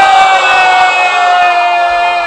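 Audience voices calling out in acclaim for a recited verse: one long drawn-out cry that slowly falls in pitch, over crowd noise.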